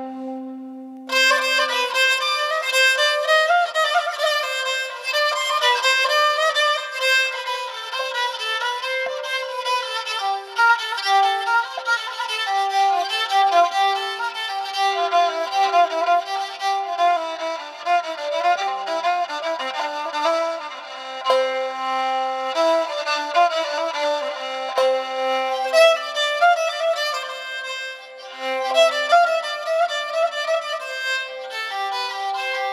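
Solo kamancheh (Persian spike fiddle) being bowed in Persian classical music. It opens on a short held low note, then plays quick, ornamented melodic phrases.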